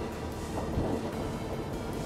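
Steady rumbling rush of wind, water and engine noise aboard a RIB running at speed, its twin Mercury Verado 300 hp outboards at about 4,800 rpm and 40 knots.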